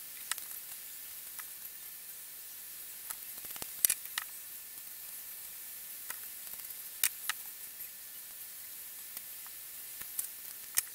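A handful of small clicks and light taps from a nail polish bottle and its brush being handled, the sharpest about four and seven seconds in, over a steady background hiss.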